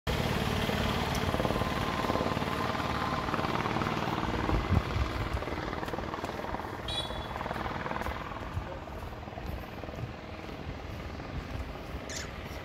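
A motor vehicle's engine running close by with a fluttering rumble, loudest at first and fading gradually.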